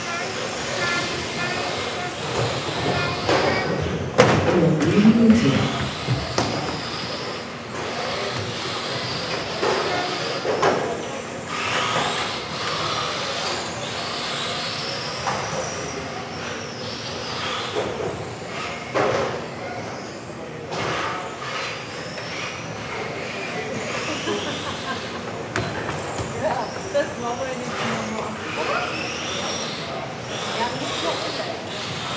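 Electric radio-controlled touring cars racing around an indoor track. Their high-pitched motor whines rise and fall repeatedly as they accelerate and brake, with a sharp knock about four seconds in.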